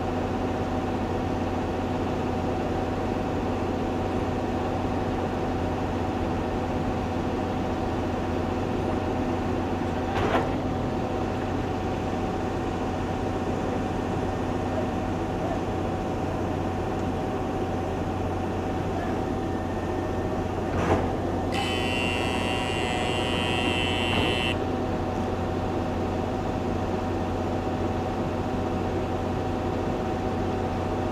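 Steady machine hum from the C-RAM gun mount, not firing, with several fixed tones in it. Two short clicks come about ten and twenty-one seconds in, and a brief hiss lasting about three seconds follows the second.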